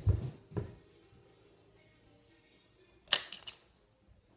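Handling noise as a person settles back in front of the camera. Two low, dull thumps right at the start, then a quick run of sharp clicks about three seconds in, like a small plastic compact case being handled.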